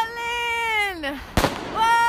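Fireworks: a long, high whistle that falls in pitch at its end, a single sharp bang past the middle, then another steady whistle.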